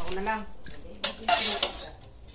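Metal ladle clinking and scraping against a large aluminium soup pot while soup is served into a bowl, with a sharp clink about halfway through and a longer clatter just after.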